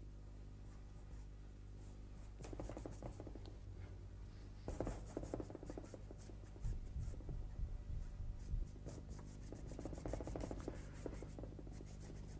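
Paintbrush scrubbing oil paint onto canvas in quick, scratchy repeated strokes that come in short runs, starting a couple of seconds in, over a steady low electrical hum.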